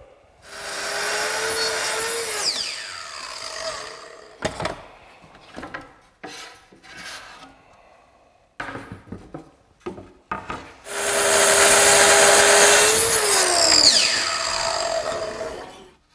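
Kreg Adaptive Cutting System plunge-cut track saw ripping wood boards twice along its guide track. Each time the motor runs at a steady pitch through the cut and then winds down, falling in pitch. Between the cuts the boards are knocked and shifted on the table, and the second cut is louder and longer than the first.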